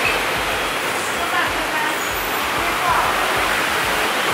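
Steady rushing hiss of an eatery's air-conditioning or ventilation unit, with faint voices of other diners coming through now and then.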